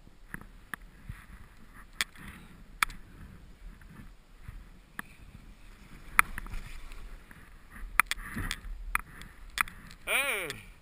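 Skis sliding through deep powder snow, a soft steady hiss with scattered sharp clicks and knocks, the hiss growing louder around eight seconds in.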